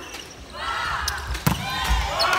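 A volleyball struck hard once, a sharp smack about one and a half seconds in, ringing in a large sports hall. Short high-pitched squeaks from players' shoes on the court floor are heard around it.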